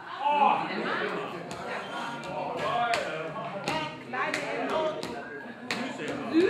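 Indistinct talking in a room, with scattered sharp taps and clicks at an uneven pace.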